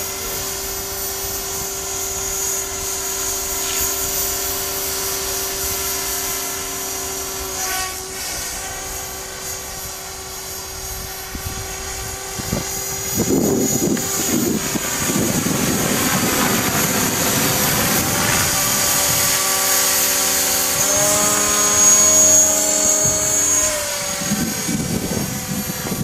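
Align T-Rex 500 electric RC helicopter in flight: a steady pitched whine from its motor and rotors that shifts in pitch several times as it flies aerobatics. Wind buffets the microphone from about 13 seconds in.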